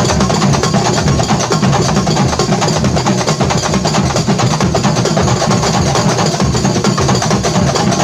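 Kuntulan percussion ensemble: many terbang frame drums struck by hand in fast, dense interlocking patterns over deeper beats from large barrel drums, keeping up a steady, loud groove.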